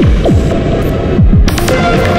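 Electronic output of a prototype Buchla-format module combining an Orgone Accumulator oscillator and a Radio Music sample player, with reverb and delay: low tones that sweep quickly downward in pitch about four times a second over a steady drone, with a bright click-like burst about one and a half seconds in.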